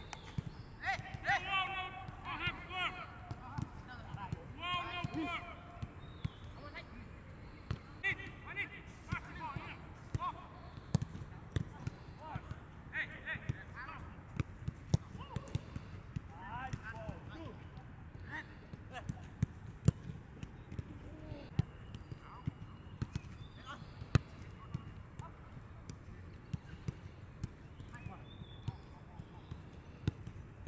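Footballs being kicked on a grass pitch: sharp thuds at irregular intervals, often one or two a second, with players' voices calling out, mostly in the first few seconds and now and then after.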